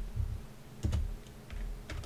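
A few isolated keystrokes on a computer keyboard, sharp separate clicks spread across the two seconds.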